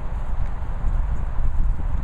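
Low, uneven rumble of wind and handling noise on a handheld camera's microphone.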